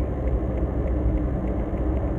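Steady low rumble of engine and road noise heard inside the cabin of a moving car.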